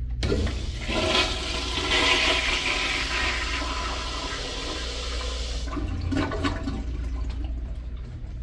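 A 1988 Eljer Sanus 3.5-gallon toilet flushing through its flushometer valve: the water rush starts suddenly, runs strong for about five seconds, then cuts down sharply and trails off in a weaker wash.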